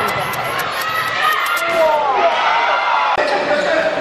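A handball bouncing on an indoor court floor amid players' shoes squeaking and voices calling out, all echoing in a large sports hall. One sharp thump comes a little after three seconds.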